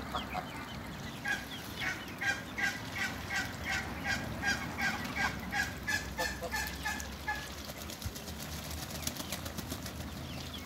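A domestic goose honking in a steady run of calls, about three a second for some six seconds, then stopping.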